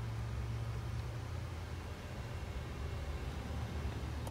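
Steady low hum with an even hiss inside the cabin of a 2021 BMW 7-Series, holding level throughout.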